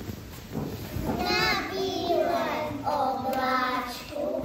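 A group of young children singing together in unison, starting about a second in, with some notes held steady.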